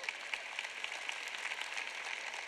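Audience applauding, many hands clapping together at a steady level.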